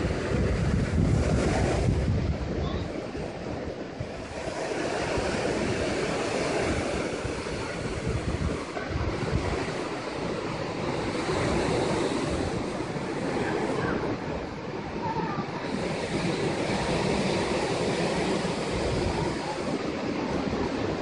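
Ocean surf washing in below, a steady noise rising and falling with the sets, with wind buffeting the microphone, heaviest in the first couple of seconds.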